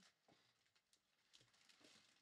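Near silence: room tone with a few very faint soft ticks.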